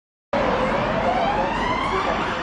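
An emergency vehicle siren wailing, its pitch rising steadily over a background of road noise; it cuts in suddenly about a third of a second in.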